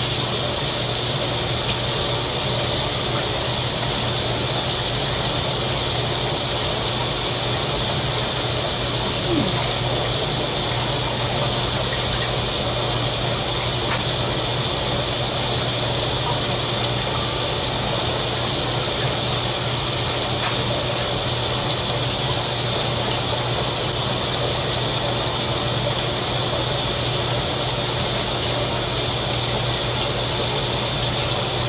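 Kitchen tap running steadily, a full stream of water pouring into the sink, with a low steady hum underneath.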